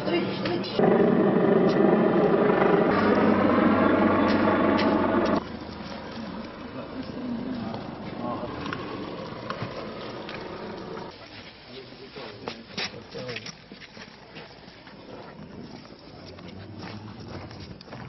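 Indistinct, unintelligible voices over handheld camera noise, loudest for the first five seconds or so, then quieter with scattered clicks and knocks from handling.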